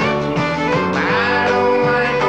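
A band playing an upbeat country-style children's song with guitar, the chords held steadily.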